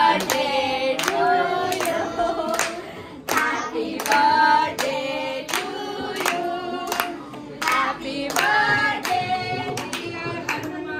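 A small group singing a Hindu devotional bhajan together, with hand claps keeping time at about two a second.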